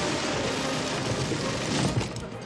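A dense, continuous barrage of rapid gunfire, as a film sound effect, that cuts off near the end.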